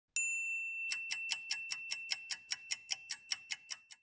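Stopwatch sound effect: a single bright bell ding that rings on, then rapid even ticking about five a second that fades away.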